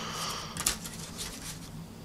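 Paper rustling as a folded cassette inlay booklet is opened out by hand, with one short sharp crackle about two-thirds of a second in.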